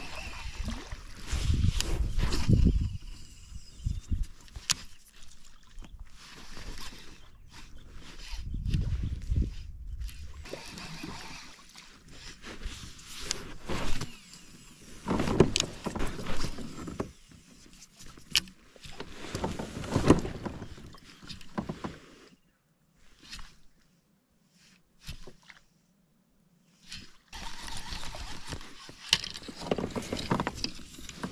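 Noises of fishing from a kayak: water against the hull, scattered knocks and rattles from gear and movement on board, and bursts of low rumble. The sound drops out almost entirely for a few seconds past the middle.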